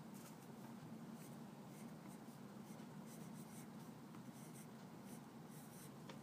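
Pencil writing on paper: faint, short scratching strokes as letters are drawn, over a steady low room hum.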